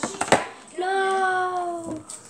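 A few quick clicks and knocks of handling, then a child's voice holding one sung note for about a second.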